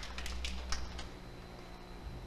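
Carom billiard balls clicking: a few sharp clicks in the first second as the balls strike the cushions and come to rest, then a low steady hum. The shot has come up short.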